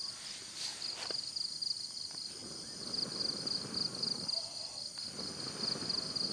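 Crickets chirping in a steady, fast-pulsing trill, with two long breathy rushes of noise, one in the middle and one near the end, from a man blowing on the embers of a small straw fire to make it catch.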